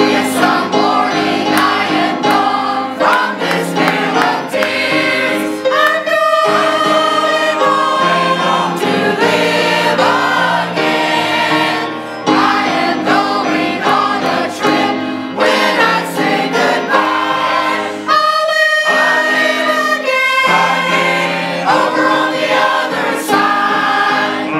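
Mixed church choir of men's and women's voices singing a Christian song together, in phrases with short breaks between them.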